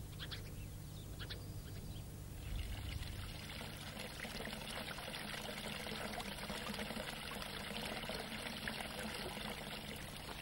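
Water pouring in a steady stream from a fountain spout and splashing into the pool below. It comes in faintly about two and a half seconds in and then runs on evenly.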